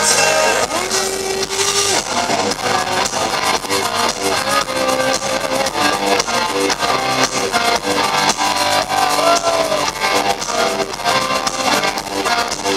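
Live rock band playing, with electric guitar leading over drums and keyboards to a steady beat; a long held note sounds near the start.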